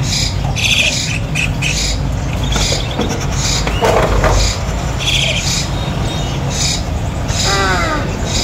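Caged birds calling: short high chirps repeat every half second or so, a louder squawk comes about four seconds in, and a call with several stacked tones sounds near the end, all over a steady low hum.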